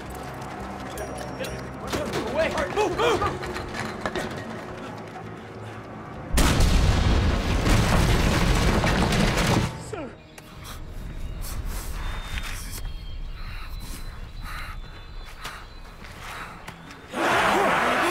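A grenade explosion about six seconds in, a sudden heavy blast with a deep rumble lasting about three seconds, set off to collapse a drainage pipe. Shouts come before it over low, tense music, and a loud scream starts near the end.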